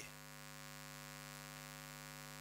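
Faint, steady electrical hum with a buzzy stack of overtones, typical of mains hum picked up in a microphone and sound-system chain.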